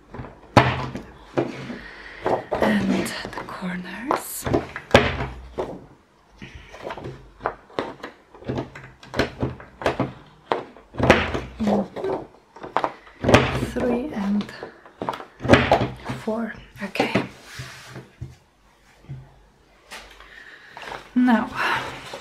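An envelope punch board punching fold notches into patterned card stock: a string of irregular sharp clicks and thunks, with the card rustling and sliding on the desk between punches.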